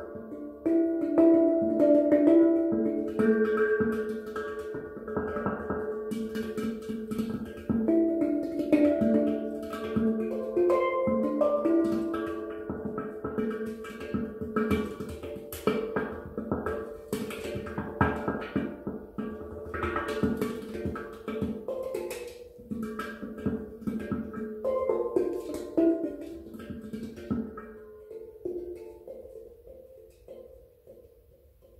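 A handpan played by hand, its steel note fields ringing in a melodic pattern. A denser run of quick strikes comes in the middle, and the notes die away near the end.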